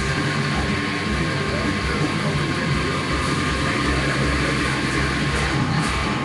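Heavily distorted electric guitar, a Jackson JS30RR through a Bugera 333 valve amp, playing a continuous heavy-metal riff. The sound is loud and dense with no breaks.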